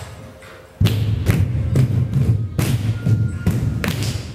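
Bare feet of a group of Odissi dancers stamping on a wooden studio floor in rhythm. A run of heavy thumps, about two a second, starts about a second in.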